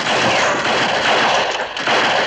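A film soundtrack's gunfight: a volley of rifle and revolver shots that starts abruptly, the shots coming so thick that they run together into one continuous din.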